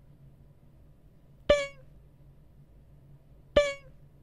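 A short comedic sound effect, a bright honk, played twice about two seconds apart. Each honk starts sharply and drops slightly in pitch at its end.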